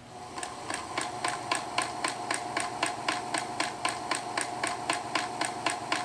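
Singer Featherweight sewing machine stitching at a steady speed: an even motor hum with the needle mechanism clicking about five times a second, starting a moment in.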